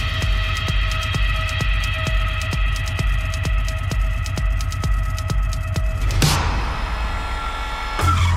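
Electronic dance music: a steady pulsing bass beat under held synth chords. About six seconds in a rushing noise sweep rises, and the bass comes back harder at the end.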